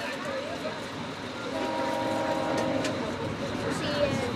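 A diesel locomotive's horn, up ahead at the front of the train, sounds once: a steady chord lasting about a second and a half, a little after the start, over the steady noise of the moving train.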